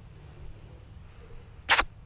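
Low, steady rumble of wind on a body-worn camera's microphone; a woman calls "Come" near the end.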